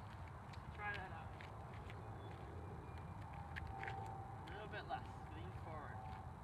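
Sneaker footsteps on an asphalt court at a walking pace, as short irregular scuffs and taps over a steady low outdoor rumble.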